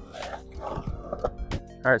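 Skateboard wheels rolling on a concrete bowl, with a few sharp clicks, the loudest about one and a half seconds in.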